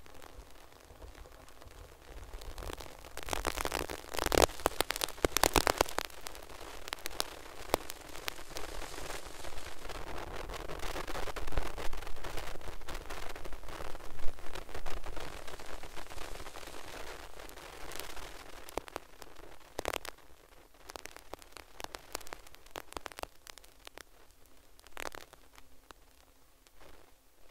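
Rushing wind noise on the microphone of a camera moving alongside the track, with scattered clicks. It swells into loud gusty stretches about four to six seconds in and again through the middle, then eases off.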